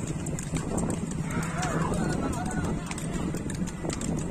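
Hooves of a pair of racing bulls clattering on the road as they pull a cart, over a steady low rumble, with people shouting in the background.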